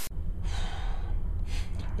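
A very short burst of TV-static hiss at a cut. Then a low rumble on the microphone, with a couple of breaths close to it, about half a second in and again near the end.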